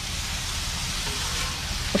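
Chopped vegetables sizzling steadily in oil on a hot steel flat-top griddle.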